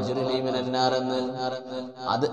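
A man's voice chanting a recitation in long, steady held notes, with a brief dip in loudness just before the end.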